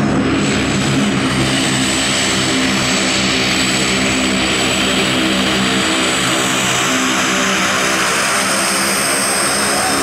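Short SC-7 Skyvan's twin Garrett TPE331 turboprop engines running steadily at taxi power, a loud propeller drone with a thin high turbine whine above it.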